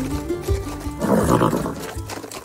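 Plucked-string background music with a Western feel, and about a second in a horse's call: a sound effect that opens a riding scene.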